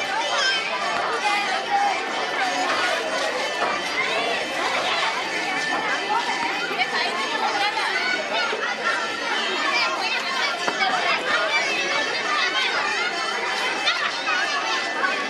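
Crowd chatter: many voices talking at once and overlapping, none standing out, at a steady level throughout.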